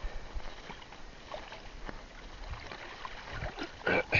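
Water splashing and dripping as a fishing net and its rope are hauled by hand from the sea alongside a small boat, with scattered small splashes and knocks and a louder burst of splashing just before the end.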